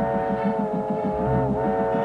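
A tugboat's chime whistle sounding one long, steady chord, dipping slightly in pitch about halfway through, over a low rhythmic throb.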